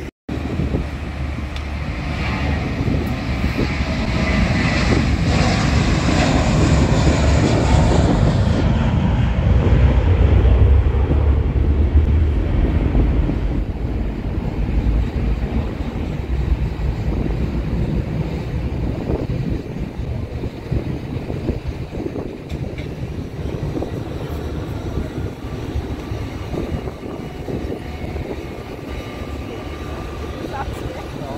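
An airliner taking off: its engine noise swells over the first several seconds to a loud peak about ten seconds in, then slowly fades as the aircraft climbs away.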